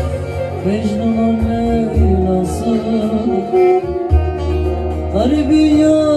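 Live Turkish folk music: a bağlama (saz) played with a man singing over it, with a steady deep bass underneath.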